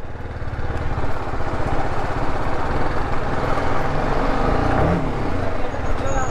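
Sport motorcycle engine running as the bike rides off slowly at low speed, its pitch rising briefly about five seconds in as the throttle is opened.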